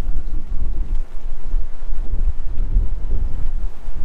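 Wind buffeting the microphone in gusts of around 20 to 25 miles an hour: a loud, uneven low rumble.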